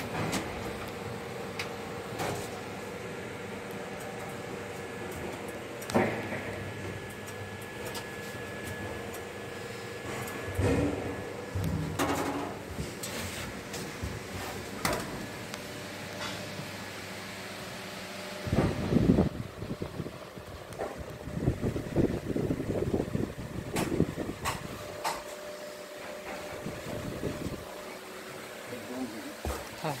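Steady ventilation hum inside a railway coach, with scattered knocks and footsteps on the coach floor as someone walks the aisle. The knocks grow busier and louder in the second half.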